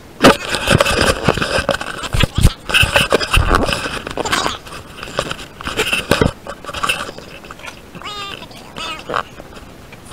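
Storage shed doors being pulled open, with a string of knocks, clatters and scraping, mixed with handling noise from a handheld camera; the clatter dies down after about seven seconds as things on the shelves are moved about.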